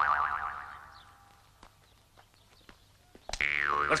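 A pitched tone that glides up, then wavers in pitch as it fades away over about a second and a half. A second wavering tone dips and rises near the end, running into a voice.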